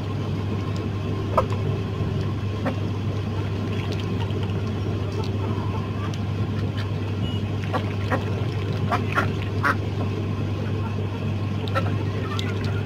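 Domestic ducks feeding from a tarp, with short quacks and sharp pecking clicks scattered throughout, most of them bunched about two-thirds of the way through, over a steady low hum.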